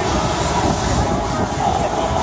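Steady loud rumbling noise of wind buffeting the microphone, with faint voices underneath.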